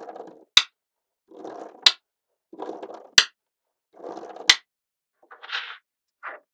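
Magnet balls clicking together: four times, about every 1.3 seconds, a short string of balls rattles briefly and then snaps into place with a sharp click. Near the end comes a softer clatter of balls.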